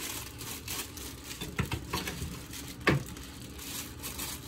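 Plastic bag crinkling and rustling as a bunch of fresh coriander is handled in it, with scattered light clicks and one sharp click about three seconds in.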